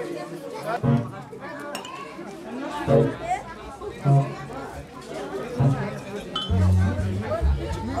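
Crowd of many people chattering at once, with music playing in the background whose bass notes come in strongly about six and a half seconds in.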